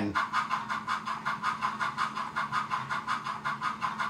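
Model steam locomotive's Tsunami2 sound decoder playing a three-cylinder steam exhaust cadence at a faster speed step: a rapid run of chuffs, about six a second, over a steady low hum. The locomotive is under load, held back by hand at the tender, so the dynamic exhaust gives the chuffs more weight.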